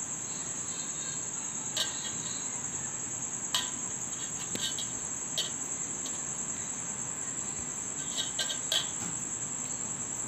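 A steady high-pitched trill throughout, with a handful of light clicks and taps as hands press and shape rice-flour dumplings over steel plates and bowls, a few of them close together near the end.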